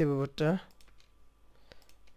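A man's voice drawn out on one syllable for about half a second, then a few faint, scattered clicks of computer keyboard keys as code is typed and deleted.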